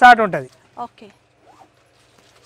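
A man's voice speaking loudly for about half a second, then a few short, faint spoken fragments before a pause.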